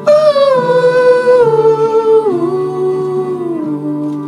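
A wordless sung melody that enters loudly and descends step by step through several held notes, sliding between them, over steady sustained chords from an electronic chord instrument.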